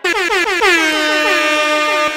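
DJ air horn sound effect, the kind dropped into hip-hop producer tags: a rapid string of short horn blasts, each dipping in pitch, running into one long held blast.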